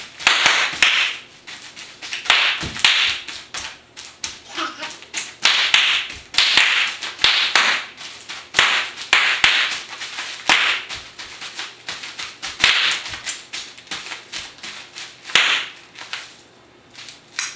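Bubble wrap popping and crackling under a small child's feet as she steps on it, in repeated bursts of sharp snaps about once a second.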